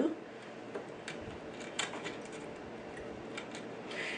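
A few light, irregular metallic ticks over low hiss: a small screwdriver turning out a screw from a sewing machine's needle plate.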